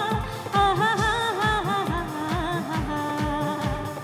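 A woman singing a Bengali song with a live band, her voice moving through ornamented, wavering phrases and settling on a held note near the end, over a steady drum beat.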